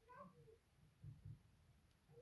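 Near silence, with faint, distant high calls in the first half second and a couple of soft low thuds after.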